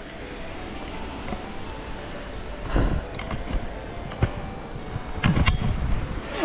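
Handling noise of a handheld camera as it is picked up and turned: a few scattered knocks and rubs, the loudest about three seconds in and another cluster near the end, over a steady low rumble.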